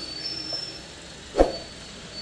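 A single short thump about one and a half seconds in, over faint room noise with a thin, high, steady whine.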